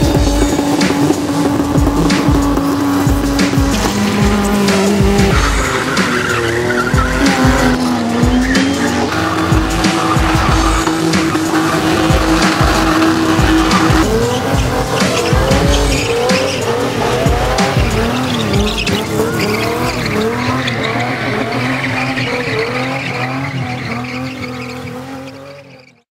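Cars spinning their rear wheels, engines held at high revs with the pitch stepping between long steady notes, and tyres squealing; music plays underneath. The sound fades out near the end.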